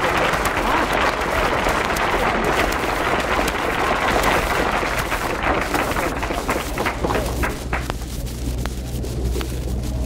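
Studio audience applauding, dying away to a few scattered claps about seven or eight seconds in.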